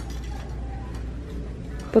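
Store background noise with a steady low hum and no distinct event.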